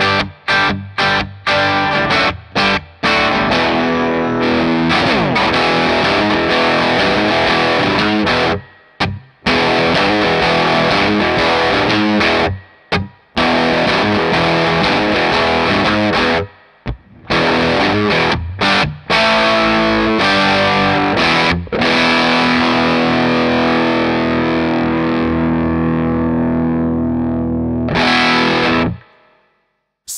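Electric guitar, a homemade Esquire with a hot Broadcaster-style bridge pickup and 250k pots, played through an Analogman Astro Tone fuzz pedal into an amp. It plays distorted chords and riffs broken by short stops, and ends on a long held chord that cuts off about a second before the end.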